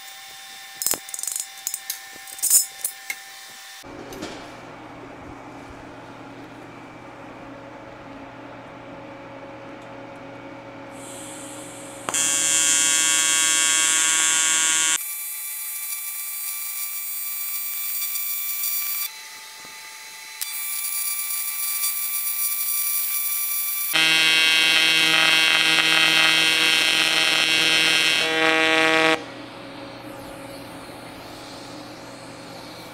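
A few sharp metal clicks as a V-band clamp is fitted. Then an AC TIG welding arc on aluminium buzzes loudly in several stretches with short breaks, and cuts off just before the end. The welder says this old cast V-band welds dirty.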